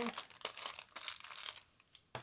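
Clear plastic packaging crinkling and crackling as an ink pad is pressed and rubbed against it, dying away near the end.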